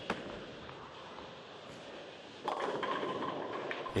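Tenpin bowling ball landing on the lane with a light knock, rolling for about two and a half seconds, then crashing into the pins, which clatter and rattle for over a second. The ball hit the pocket light and did not carry, leaving one pin standing.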